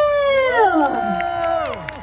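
A woman's long, high cheer held into a microphone over the PA, with other voices from the crowd whooping and cheering along; the voices slide down and fade out near the end.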